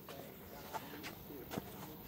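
Faint trickle and glug of liquid poured from a large glass jug into a plastic cup, with a few light knocks and faint voices in the background.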